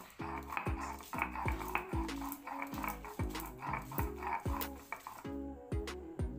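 Stone roller (nora) worked back and forth on a grooved stone grinding slab (shil), crushing soaked chickpeas into paste: a grating, rumbling stroke in an even rhythm of a little over two strokes a second, each stroke starting with a click.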